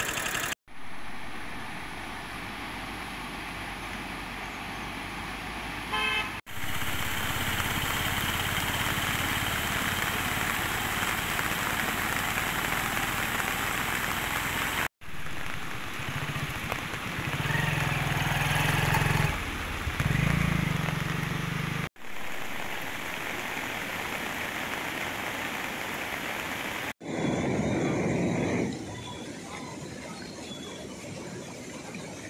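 Several short outdoor clips joined by hard cuts, each carrying a steady rushing noise. In the middle a motor vehicle adds a steady low drone.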